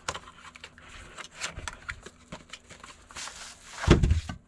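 Small cardboard product box being opened by hand, its end flap pulled open and the inner tray slid out: scattered light clicks and rustles of cardboard and plastic wrapping, with a louder thump near the end.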